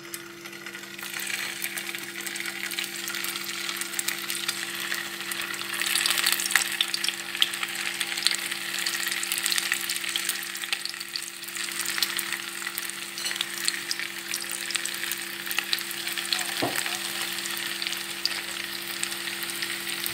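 Raw köfte meatballs frying in hot oil in a pan: a steady sizzle with many sharp pops, starting about a second in and louder from about six seconds in. A steady low hum runs underneath.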